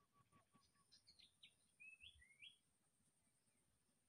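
Near silence with faint bird chirps: a row of short high notes in the first second, then a few quick falling and rising chirps about one to two and a half seconds in.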